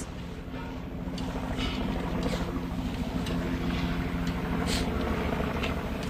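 Steady engine drone with a constant low hum and a few faint ticks.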